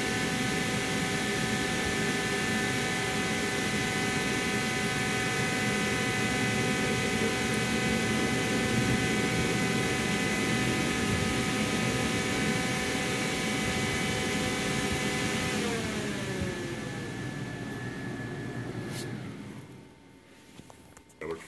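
A motor whine with a rush of air and many steady overtones, holding one pitch, then winding down in pitch about 16 seconds in and fading out near the end.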